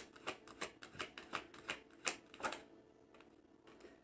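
A tarot deck being shuffled in the hands: a quick run of light card clicks, about six a second, that stops after about two and a half seconds.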